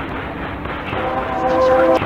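Ambient music: a dense, hissy, muffled wash of sound with no high end, into which a sustained pitched tone with a horn-like or vocal quality enters about halfway through, swells, and cuts off abruptly at the end.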